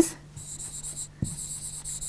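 Marker pen writing on a board: a scratchy stroke about half a second in, a short pause, then a longer run of strokes until near the end.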